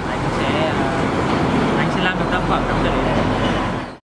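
Voices talking over street traffic noise with a low rumble. Everything fades out sharply just before the end.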